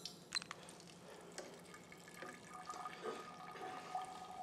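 Faint dripping and trickling of wine as gas pressure pushes it through a 0.45 µm membrane filter into a graduated cylinder during a filterability test, with a couple of light clicks about half a second in.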